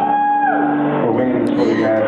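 A recorded song starts up abruptly, with guitar and held notes. It sounds dull and muffled, as if played from a low-quality source.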